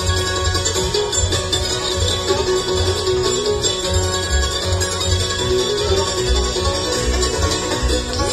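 Bluegrass band playing an instrumental passage: picked five-string banjo and mandolin over an upright bass that keeps a steady beat.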